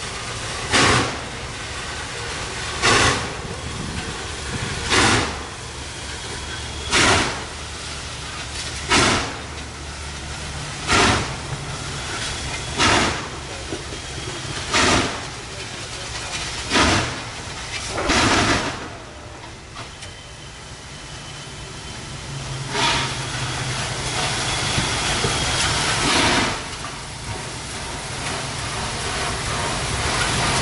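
Norfolk & Western 611, a J-class 4-8-4 steam locomotive, working slowly under load with heavy exhaust chuffs about two seconds apart over a steady hiss of steam as it pulls its excursion train. The beats lapse for a few seconds about two-thirds through, then two more follow.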